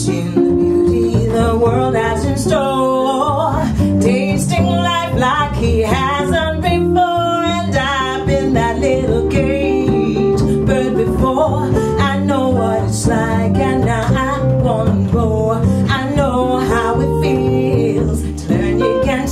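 A woman singing with vibrato over acoustic guitar and a plucked upright double bass: a live soul-folk band.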